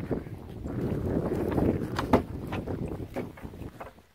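Wind rumbling on the phone's microphone, with a string of clicks and knocks, the sharpest about two seconds in, as a rusty latch on a wooden outhouse door is undone and the door is pulled open.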